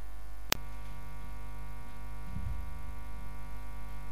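A steady faint hum of held tones in the gap between songs, broken by a single sharp click about half a second in.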